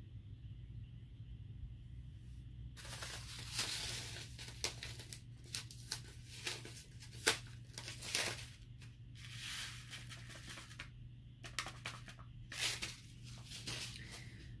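Paper seed packet being handled and torn open, rustling and crinkling in bursts from about three seconds in, with a few sharp ticks.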